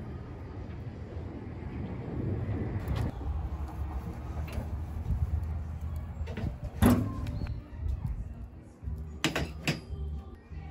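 A gas grill's metal lid shutting with one loud clank about seven seconds in, over a low steady rumble. Two sharp knocks follow shortly before the end.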